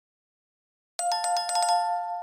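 Silence, then about a second in a notification bell sound effect: a bright bell chime struck rapidly several times, ringing on as it fades.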